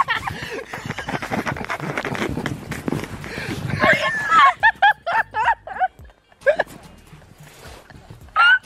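Rushing, scraping noise of a sled sliding over snow, with the microphone knocked about. About halfway in this gives way to a burst of rapid, repeated high-pitched laughter.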